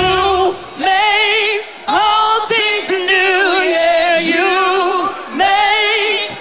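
Singing voices holding long notes with heavy vibrato, in phrases about a second long separated by short breaths. The low accompaniment drops out about half a second in, leaving the voices almost unaccompanied.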